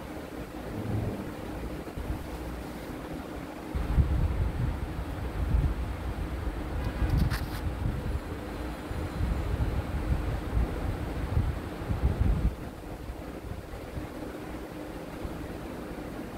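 Wooden rolling pin rolling bread dough on a wooden board: a low rumble in uneven back-and-forth strokes from about four seconds in until about twelve seconds, quieter before and after, under a faint steady hum.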